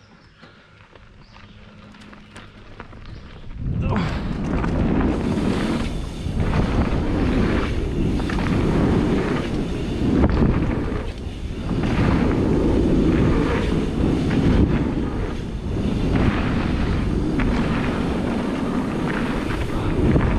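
Mountain bike descending a dirt trail: wind buffeting the helmet camera's microphone and knobby tyres rumbling over the dirt. It starts quietly as the bike rolls off, grows louder, and from about four seconds in stays loud with short dips.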